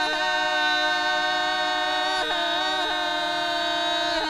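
Bulgarian women's folk group singing a cappella, holding long notes together, with the voices stepping to new pitches a few times.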